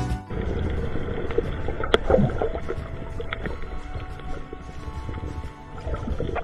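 Muffled underwater sound picked up by a submerged camera, with gurgling air bubbles and a sharp click about two seconds in; faint music continues underneath.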